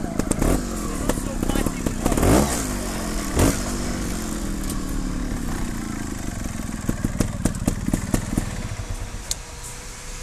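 Trials motorcycle being kicked over without starting: a few knocks, then a whir that slowly falls in pitch and fades over a few seconds. The engine does not catch, and the riders wonder whether an electrical fault is keeping current from reaching it.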